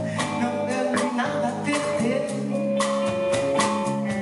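Live band playing a Brazilian song: electric guitar and drum kit with cymbal strokes, and a singing voice over them.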